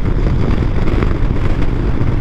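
Harley-Davidson V-twin motorcycle running steadily at highway speed, its engine sound mixed with wind noise on the microphone.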